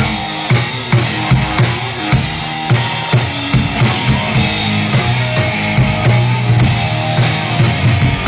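Live rock band playing a passage without vocals, the drum kit to the fore with kick and snare hits about three a second over sustained bass and guitar.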